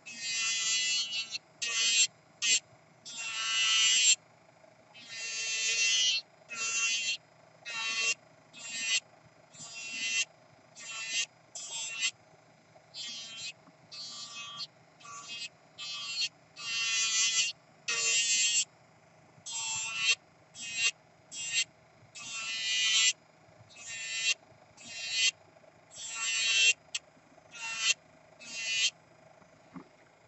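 Kupa Manipro electric nail drill (e-file) running with a steady motor hum, its sanding bit grinding acrylic nail in repeated short scraping passes about once a second as it is pressed to the nail and lifted off.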